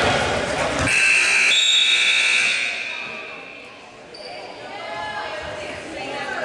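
Gymnasium scoreboard buzzer sounding once, starting sharply about a second in, holding for about a second and a half and then dying away in the hall. Crowd voices before it.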